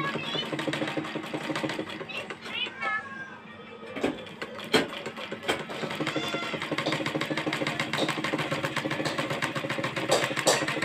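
Domestic sewing machine stitching, a fast, even run of needle strokes from about halfway in, with a couple of sharp clicks as it starts. A few short high wavering calls come earlier and again partway through.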